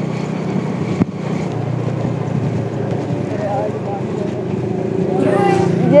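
Motorcycle engine running steadily at riding speed, a constant low hum under road noise.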